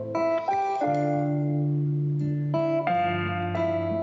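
Instrumental introduction to a song on acoustic guitar and keyboard, playing slow sustained chords that change about a second in and again near the three-second mark.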